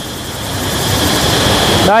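Fast-flowing river water rushing over rocks, growing steadily louder, with a steady high-pitched cicada buzz above it.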